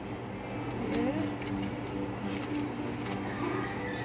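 Aluminium foil crinkling several times as a cooked foil packet is handled open, over a steady low hum.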